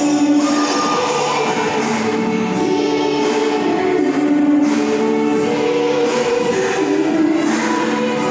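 Music: a song sung by a group of voices together, in long held notes that move from one pitch to the next.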